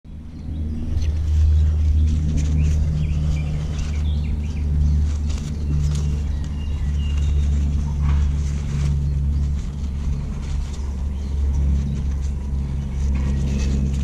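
A steady low rumble throughout, with fabric rustling and light clicks as a cloth sleeve is handled and unwrapped from a fishing rod; a few faint bird chirps above.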